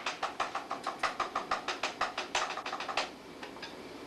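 Guitar strings picked in a quick, even rhythm of short clicky plucks, about six a second, with no ringing notes. The run thins out and fades after about three seconds.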